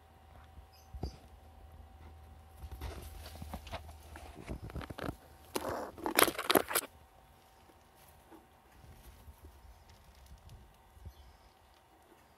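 A pet squirrel scrabbling and scratching about, an irregular run of rustling and sharp clicks that is loudest about six seconds in.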